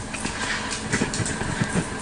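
Livescribe smartpen writing on paper, its tip making soft, irregular scratches over a steady low background hum.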